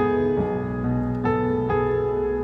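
Digital keyboard on an acoustic grand piano sound playing sustained, richly voiced worship chords. A chord is struck at the start and changes follow several times, reaching a B13 chord near the end.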